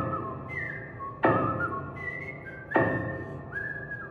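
Grand piano chords struck about every one and a half seconds, each ringing out and fading, with a high whistled melody that slides between notes above them.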